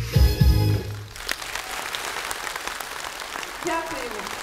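A song's backing music ends with a few final accented beats about a second in, followed by audience applause.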